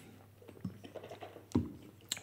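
Mouth noises of people tasting a sour ale: sips, swallowing and small lip smacks, with one louder thump about one and a half seconds in.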